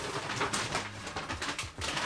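Rummaging through a bag: rustling with a few light knocks and clicks of handled items.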